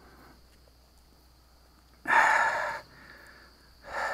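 A person breathing out heavily close to the microphone about two seconds in, then a shorter breath near the end.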